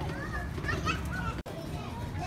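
Children's voices chattering and calling out in the background, with a low steady rumble underneath. The sound breaks off for an instant a little past halfway.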